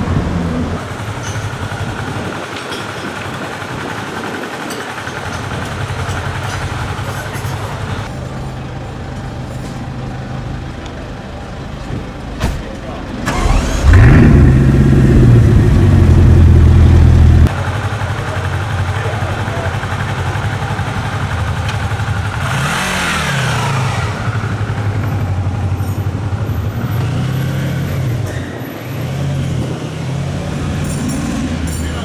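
Bugatti Chiron Sport's quad-turbo W16 engine starting up in a series of edited clips. It fires with a sudden rising flare and holds a loud steady high idle for about three seconds before the clip cuts off. Short revs rise and fall later, over engines idling on the street.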